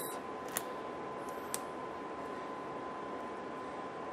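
Quiet room tone: a steady hiss with a faint high-pitched steady whine, broken by two soft clicks about a second apart from a small plastic lip gloss tube being handled.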